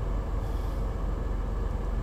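Steady low rumble inside a car's cabin, the sound of the car's engine running.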